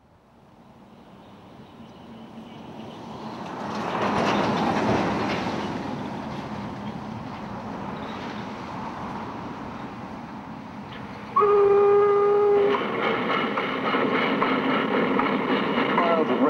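Steam train rumble and clatter fading in and building to a peak about four seconds in, then a steam locomotive whistle blown once in a single steady note for about a second and a half, with train sound carrying on after it.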